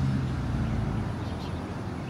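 Low, steady hum of a motor vehicle engine in outdoor street ambience, fading over the two seconds.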